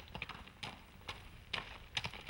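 A ridden horse walking on a dirt trail, its hooves giving a few irregular, fairly quiet knocks.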